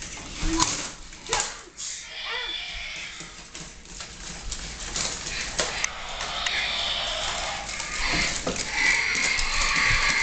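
Remote-controlled robot dinosaur toys battling on a tile floor: electronic growl and roar sound effects from the toys, over a clatter of plastic feet and bodies knocking on the tiles.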